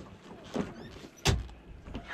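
A single sharp knock a little after a second in, with a fainter knock about half a second in.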